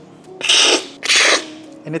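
Loud slurping of brewed coffee from a cupping spoon, the cupper's hard aspirating slurp that sprays the coffee across the palate, in two pulls about half a second apart.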